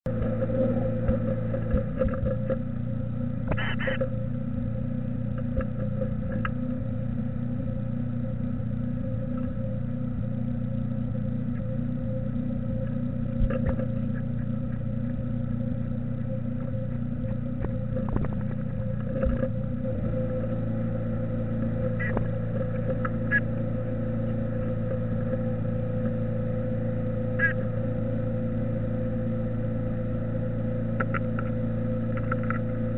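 A steady electrical hum from a nest-box camera's microphone, with a few short faint scratches and taps as a black-capped chickadee moves about on the wooden walls and floor of the box.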